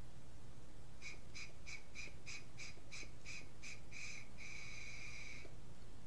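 A faint high-pitched tone pulsing about three times a second for roughly three seconds, then held steady for about a second, over a low steady hum.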